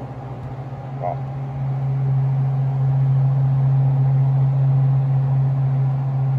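A steady low machine hum that swells louder for a few seconds in the middle, with a short spoken word about a second in.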